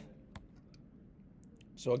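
Quiet room tone with a single faint click about a third of a second in, then a man's voice starting just before the end.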